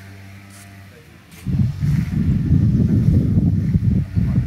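Wind buffeting the camera microphone: a loud, uneven low rumble that starts about a second and a half in. Before it, a faint steady low hum.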